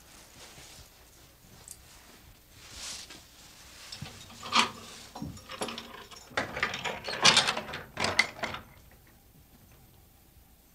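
Wooden knocking and rattling: one sharp knock about four and a half seconds in, then a busier run of clattering knocks for about two seconds before it stops.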